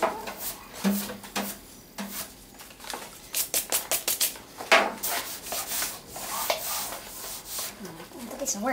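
Scattered short rubbing strokes and light knocks on a car hood coated in sanded body filler, in a lull between bouts of block-sanding with 180-grit paper. The strokes come thickest a few seconds in.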